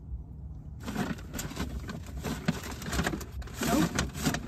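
Rummaging through a paper takeout bag and its food containers while searching for ketchup packets. It is a dense run of paper crinkles and small clicks that starts about a second in.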